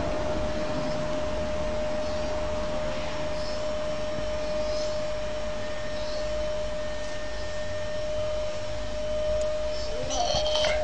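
A steady mechanical whir with one constant high-pitched hum running through it, with faint short high chirps every second or so.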